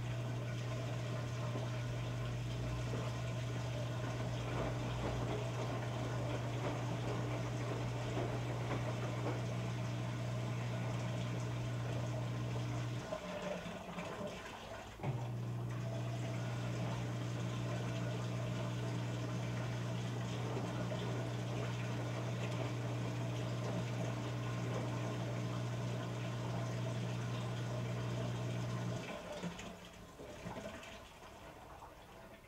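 Electrolux EFLS517SIW front-load washer running with a steady electric hum and rushing water. The hum stops for about two seconds midway, starts again, and cuts off shortly before the end.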